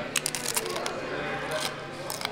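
Biting into and chewing a small cabrito taco close to the microphone: a few sharp, crackly clicks of the bite and chewing.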